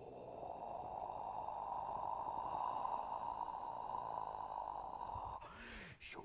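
A man's vocal sound effect made with the mouth: a steady, noisy drone held for about five seconds, breaking into a short swooping sound just before the end.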